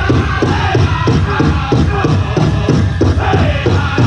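A powwow drum group singing a chicken dance song together over a steady, fast beat on a large shared drum.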